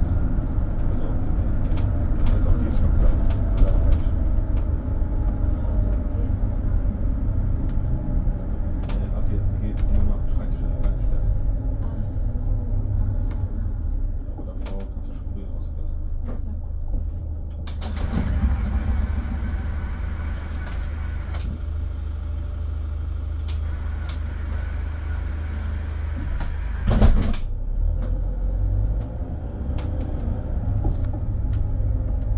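Cabin noise of a Mercedes-Benz Sprinter City 45 minibus on the move: a steady low rumble of engine and tyres, with light interior rattles and clicks. A brief louder swell of noise comes near the end.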